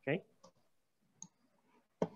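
A brief murmur of a man's voice, then two faint, sharp computer mouse clicks about half a second and a little over a second in.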